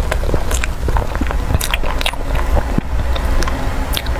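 Close-miked chewing of a mouthful of soft cream box cake: irregular wet mouth clicks and smacks. A metal spoon scoops into the cake tin near the end.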